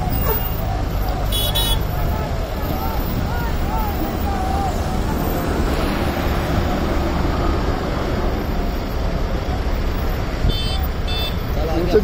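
Highway traffic: the steady engine and tyre rumble of trucks, cars and motorcycles passing in a slow line, with short high-pitched horn toots about a second and a half in and twice near the end.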